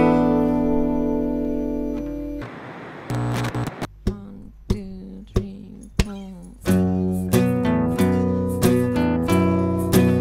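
Acoustic guitars: a chord rings out and fades over the first couple of seconds, a few soft single notes are picked in a quiet stretch, then steady rhythmic strumming starts about two-thirds of the way through.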